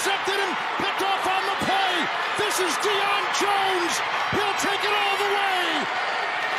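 TV broadcast announcer shouting excitedly in a high, raised voice during an interception return, over steady stadium crowd noise.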